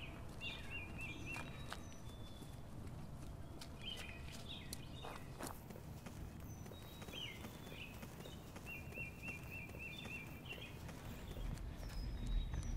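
Woodland ambience: birds singing in short repeated trills and chirps over a low steady rumble, with the footfalls of people jogging on a dirt trail.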